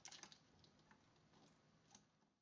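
Near silence, with a few faint light clicks in the first moment and a faint tick or two later.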